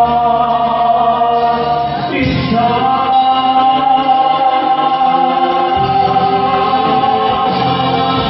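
Concert band of woodwinds and brass accompanying a male vocalist in a slow ballad. About two seconds in the harmony shifts, and a long note is then held to the end.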